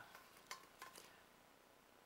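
Near silence with a few faint clicks and taps from a brass cornet being handled, fingers on its metal valve slides.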